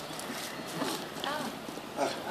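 Dry straw strands rustling, with a few light knocks, as they are twisted and woven into the seat of a wooden chair.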